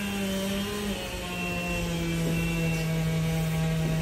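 Chainsaw running steadily at a distance, a continuous engine drone whose pitch steps down slightly about a second in.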